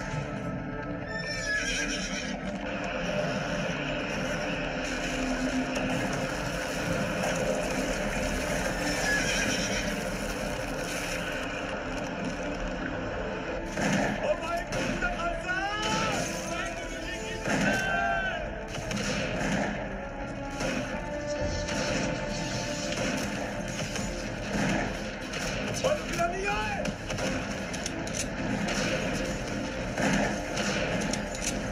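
Horses neighing several times over a film's background music, the calls bunched in the middle and again near the end.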